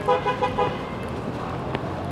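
A vehicle horn sounding a few quick toots in the first second, over the general noise of a busy street square.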